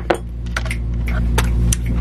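A few light clinks and taps from a ceramic mug with a metal spoon in it being handled on a stone kitchen counter, over a steady low hum.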